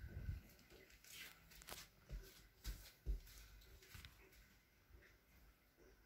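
Near silence broken by faint low thumps and light rustles and clicks, the loudest thump about three seconds in: movement noise of a handheld phone carried by someone walking indoors.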